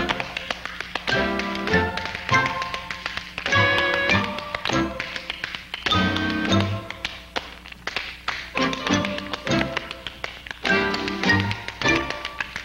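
Two dancers' tap shoes clicking in quick rhythmic runs on a stage floor, with short phrases of musical accompaniment breaking in every couple of seconds.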